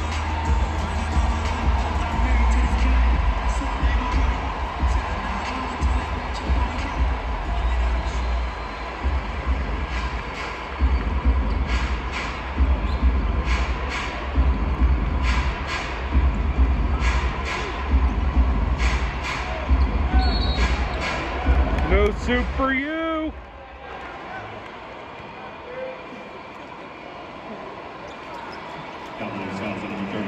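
Arena music with a heavy bass beat plays over the sounds of a basketball game: a ball dribbling on the hardwood court and a few sharp squeaks. About three-quarters of the way in, the music cuts off suddenly, leaving much quieter arena sound.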